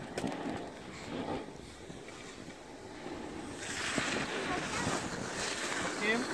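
Wind buffeting a phone's microphone during a run down a groomed slope, with a rider's edges scraping over the snow; the scraping hiss gets louder about three and a half seconds in.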